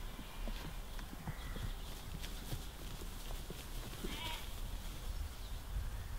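Sheep bleating, with one short call about four seconds in, over a low steady rumble and scattered light clicks.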